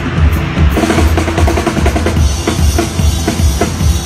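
Live rock drum solo on a full drum kit: rapid strokes around the drums over a driving bass drum, with a quick run of pitched tom hits in the first half.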